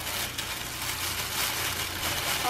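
Tissue paper rustling and crinkling as it is pulled out of a gift box by hand.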